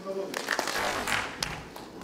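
A man's voice briefly, then audience applause in a hall: a loud burst of clapping about half a second in, thinning to a few separate claps.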